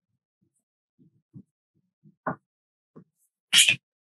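Green wax crayon scratching on construction paper in a few short strokes while zigzag lines are drawn. The loudest and scratchiest stroke comes near the end.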